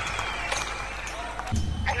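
Produced DJ-show intro: a fading wash of noise trails off, then about one and a half seconds in a deep bass comes in and a voice with an effect says 'Hello?' near the end.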